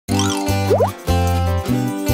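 A bouncy children's intro jingle with a bass line that changes every half second or so. A little under a second in come two quick rising 'bloop' cartoon sound effects, one after the other.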